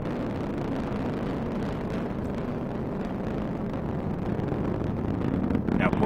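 Steady rumbling roar of an Atlas V 551 rocket in supersonic climb, its RD-180 first-stage engine and five solid rocket boosters burning. A voice begins near the end.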